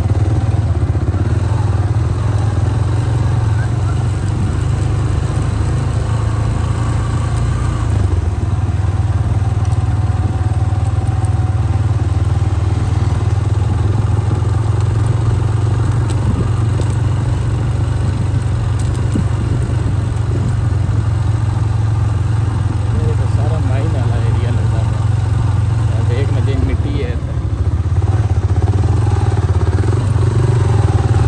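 Motorcycle engines running steadily while riding slowly along a rough dirt track.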